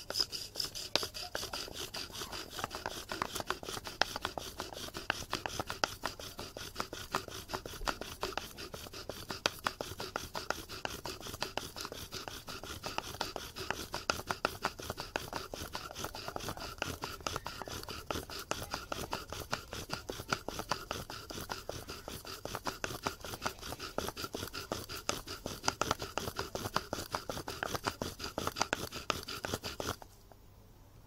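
Bow drill in use: a poplar spindle sawed back and forth by a bow grinds in a willow hearth board, a fast continuous wooden rubbing with a steady high squeak running through it. The hearth is smoking, the friction charring the wood toward an ember. The drilling stops near the end.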